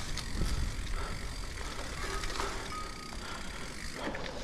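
Mountain bike rolling down a dirt forest trail: a steady low rumble of tyres on the ground, with scattered clicks and rattles from the bike over bumps. A brief thin tone sounds about three quarters of the way through.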